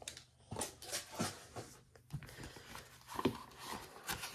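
Soft rustling and a few light taps and clicks of paper and plastic packaging being handled, from the contents of a trading card box.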